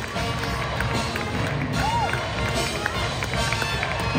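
Many feet running across and off the stage risers as a show choir exits, over a live band playing.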